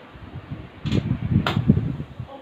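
Handling noise from a phone and a small action camera being moved about by hand: low rubbing bumps, with two sharp clicks about half a second apart, starting about a second in.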